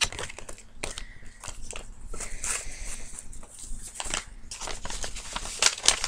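Paper and plastic sample packaging being handled and crinkled: an irregular run of small crackles and rustles.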